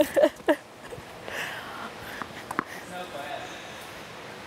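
A woman's brief laugh, then the quiet room tone of an indoor tennis hall with a few faint taps.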